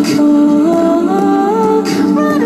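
Layered, wordless a cappella vocal harmonies: a woman's voice looped through a TC-Helicon loop pedal and played back over a PA speaker, several held notes stacked together and stepping in pitch. A short hissing beat repeats about every two seconds.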